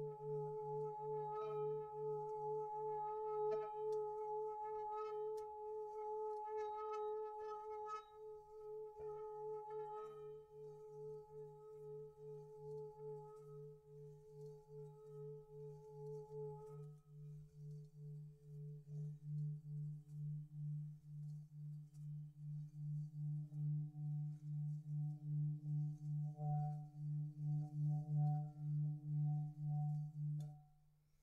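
Singing bowls ringing in a meditation piece: a low, evenly throbbing hum under sustained ringing tones. The higher tones give way to a different, lower set about halfway through, and a few light pings sound in the first third.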